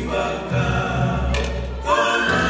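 A choir singing, the voices holding long notes, with a short rise in pitch just before the end.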